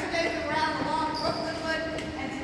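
Indistinct talking echoing in a large gymnasium, with a faint steady hum underneath.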